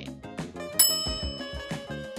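Background music, with a bright bell-like ding sound effect a little under a second in that rings on and fades.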